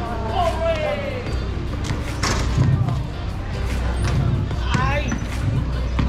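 Voices of a crowd over background music, with a few thuds of basketballs bouncing on a concrete court.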